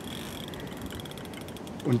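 Spinning fishing reel clicking rapidly and steadily, a fast run of fine mechanical ticks.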